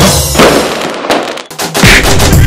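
TV title-sting sound effects over music: firework-like crackles and bangs, then a swell that builds into a loud hit near the end.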